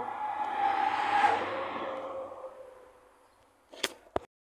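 A vehicle passing by. Its engine tone drops in pitch as it goes past, loudest about a second in, then fades away over the next two seconds. Two sharp clicks come near the end.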